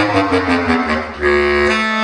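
Selmer Paris Privilege bass clarinet played: a short run of notes stepping downward, then one note held to the end.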